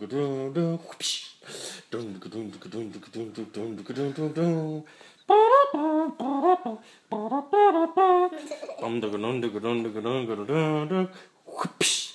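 Wordless, rhythmic vocalizing in a low man's voice, like humming or chanting in time, with a higher-pitched stretch of voice in the middle. Short hissy bursts come about a second in and again just before the end.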